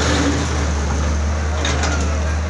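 Diesel engine of a CAT backhoe loader running steadily under load while its bucket breaks up a brick building, with masonry crunching and falling, loudest near the end.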